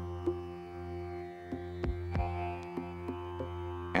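Background music: a steady low drone with sustained tones above it and a few sharply struck notes.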